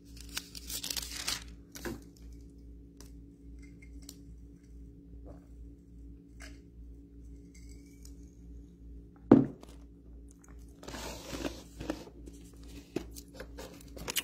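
Thin Bible pages rustling as they are leafed through, in bursts near the start and again about eleven seconds in, with scattered small clicks between. One sharp knock comes about nine seconds in, and a faint steady low hum runs underneath.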